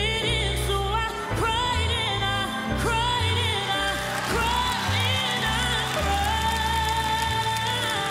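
A woman sings a slow soul ballad live over bass and keyboard accompaniment. Her voice slides and wavers through ornamented phrases, then holds one long note near the end.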